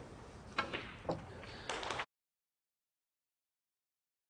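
Snooker shot being played: a few sharp clicks of the cue tip on the cue ball and of balls striking, over quiet arena hush, with more clicks just before the sound cuts out abruptly about halfway through.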